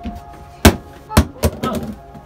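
Sharp knocks and clacks of a wall-mounted medicine cabinet door being pushed and pulled open by hand. There are three hits: the loudest about two-thirds of a second in, then two more close together about half a second later.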